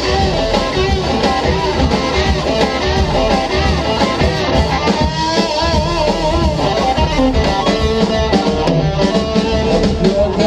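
Live rock band playing an instrumental passage: electric guitars over a drum kit, with wavering held guitar notes about halfway through.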